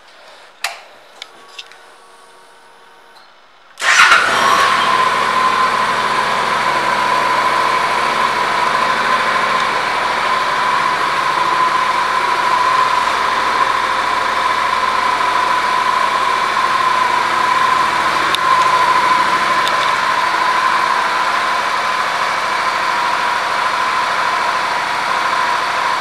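Honda CTX700's parallel-twin engine started about four seconds in, catching at once and then idling steadily to the end. A few light clicks come before it.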